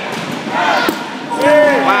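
Voices shouting during a dodgeball game, in two loud calls about half a second and a second and a half in, with a short thud just before the one-second mark.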